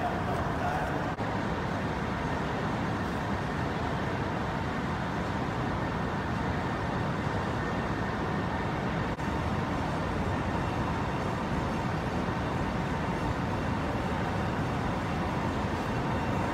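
Steady, even rushing noise of a large hall's air conditioning and air purifiers running.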